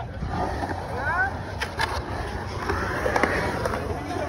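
Skateboard wheels rolling over a concrete skatepark bowl, a steady low rumble, under crowd chatter and shouts. A couple of sharp clicks come about a second and a half in.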